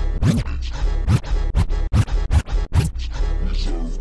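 DJ turntable scratching over a slowed-down, chopped-and-screwed West Coast hip hop beat: about half a dozen quick back-and-forth scratch strokes, with the sound cut off sharply between some of them.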